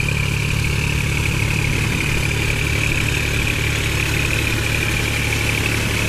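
New Holland 4710 Excel tractor's three-cylinder diesel engine running steadily under load, driving a rotavator through a flooded paddy field, with a steady high whine above the engine note.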